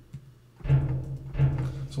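Two sampled concert bass drum strokes, about three-quarters of a second apart, played back by the notation software as bass drum notes are entered into the percussion part.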